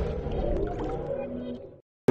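The fading tail of a channel's electronic intro jingle, dying away to silence just before the end.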